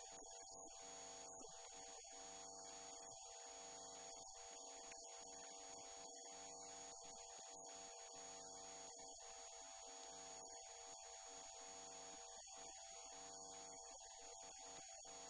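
Near silence: a faint, steady electrical hum with a high-pitched whine, and no speech.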